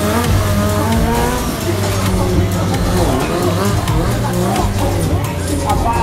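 Kawasaki 636 sport-bike engine revving up and down repeatedly while the rider holds a wheelie, heard over loud background music and a voice.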